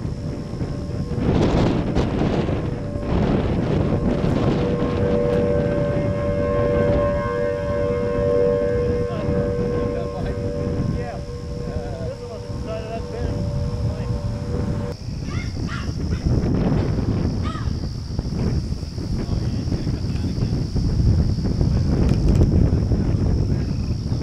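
Strong wind buffeting the microphone throughout. From about five seconds in, a steady two-tone wail like an outdoor tornado warning siren sounds over the wind for about ten seconds, then cuts off abruptly.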